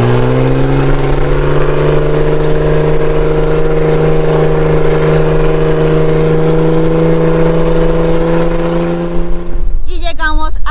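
A vehicle's engine driving along a sand track, heard from the cabin by a side window, with wind and tyre noise under it. Its note rises through the first second, holds steady, and stops just before the end.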